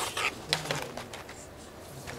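Plastic punnet and its wrapping handled against a wall and a desk: a few sharp crackles and taps, the loudest at the start and about half a second in.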